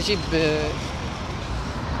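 A man speaking a few words in Arabic, over a steady low background rumble.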